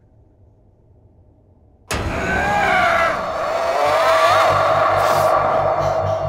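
Horror-trailer sound design: a faint low drone, then about two seconds in a sudden loud sting of shrieking, wavering tones that bend in pitch. From about four seconds a throbbing low pulse joins in.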